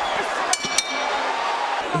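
Boxing ring bell struck twice in quick succession about half a second in, marking the end of the round, over steady arena crowd noise.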